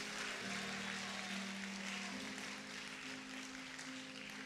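Soft sustained keyboard chords, the held notes moving to new pitches about half a second in and again about two seconds in.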